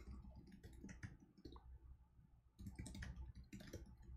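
Faint computer keyboard typing: quick runs of keystroke clicks, pausing briefly a little before halfway, then a denser run of keystrokes.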